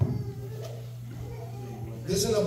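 A sharp thump at the start, then a soft, wavering, whining cry, higher-pitched than an adult voice, over a steady low hum.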